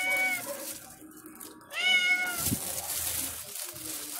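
A cat meowing twice: a long call ending about half a second in, then a second call of about a second, about two seconds in.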